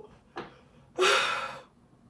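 A man's breathing as he catches his breath after a laughing fit: a short faint breath, then about a second in a louder gasping breath lasting about half a second.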